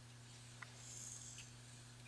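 Near silence: a faint steady hum and hiss, with a few faint ticks, as the Sony TC-440 reel-to-reel plays the blank start of a tape before the music begins.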